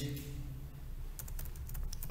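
Typing on a computer keyboard: a quick run of keystrokes in the second half, entering a short word.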